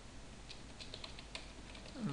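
Computer keyboard being typed on: a run of quiet, irregularly spaced key clicks as a word is typed.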